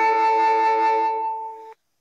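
Smartphone alert chime: a few notes sounding together as a held chord that fades out about a second and a half in.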